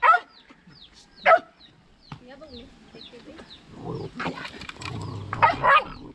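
A dog barking, two short sharp barks near the start, over repeated high falling peeps of chicks.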